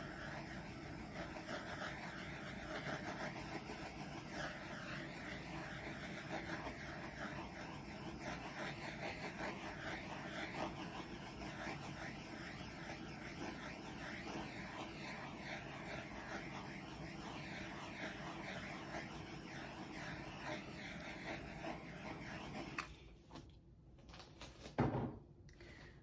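Handheld butane torch burning with a steady hiss as it is played over wet acrylic paint; it shuts off abruptly near the end.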